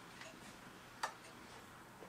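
Faint, regular ticking about once a second in a quiet room, with one sharp click about a second in.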